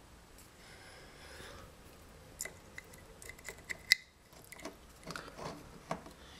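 Faint handling sounds of a recessed ceiling spotlight fitting and its lamp-socket connector turned in the fingers: scattered small clicks, the sharpest about four seconds in.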